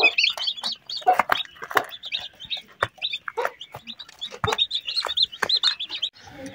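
Newly hatched Heavy Cochin and Polish chicks peeping rapidly and continuously, their high chirps overlapping, with the mother hen clucking now and then.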